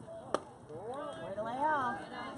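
A single sharp crack of the softball at home plate about a third of a second in, followed by voices calling out in long swooping shouts that are loudest near the end.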